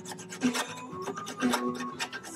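Short scraping strokes of a hand tool working a joint cut in hardwood moulding, under background music with a steady beat about once a second.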